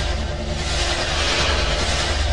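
Cinematic sound effect for an animated logo: a loud, steady rushing noise over a low, pulsing rumble.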